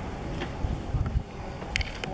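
Low, uneven rumble of wind and camera handling on the microphone, with a few heavier low thumps midway and a couple of sharp clicks near the end as the camera is moved.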